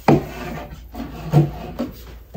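Body-spray bottles being shuffled and slid against each other and across a wooden shelf, with a sharp knock right at the start and a few smaller bumps and scrapes after it.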